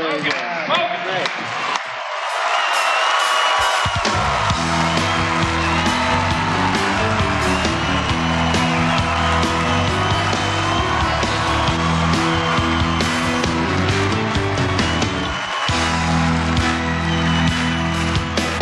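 A live country band strikes up a song about four seconds in, with electric and acoustic guitars over steady bass notes and drums. The band drops out for a moment past fifteen seconds and comes back in. Before the band starts there is a short stretch of crowd noise.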